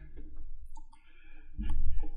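A few small clicks over a low rumble picked up by the open lectern microphone.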